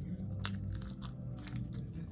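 A person chewing food close to the microphone, with one crisp crunch about half a second in and a few softer mouth clicks after it.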